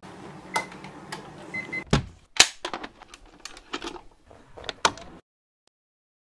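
A VCR taking in and loading a videocassette: a run of mechanical clicks and clunks over a steady motor hum, with a couple of short faint beeps early on. It cuts off suddenly about five seconds in.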